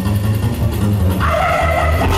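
Live rock band playing loud through a festival PA: a heavy bass note runs on, and about a second in a squealing high guitar tone comes in and holds, with a brief wavering glide under it.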